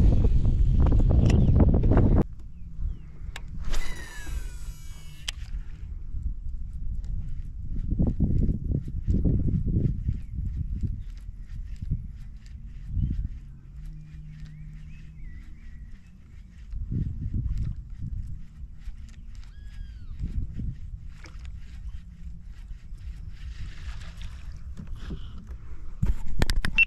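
Topwater fishing from a kayak: a short whirr of line and reel about four seconds in, then water splashing and sloshing with faint ticking of the reel as the lure is worked across the surface. A loud low rumble fills the first two seconds.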